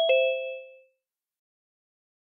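Two-note electronic chime from a Zoom meeting notification, falling from a higher to a lower tone, the second note ringing out and fading within a second.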